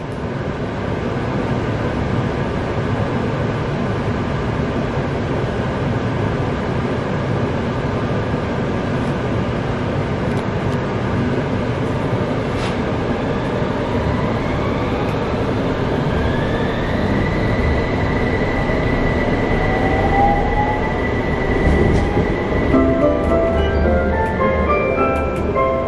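Utsunomiya Light Rail HU300 tram running, heard inside the car: steady rolling and running noise, with a motor whine that rises in pitch about halfway through and then holds as a steady high tone. An onboard chime starts near the end.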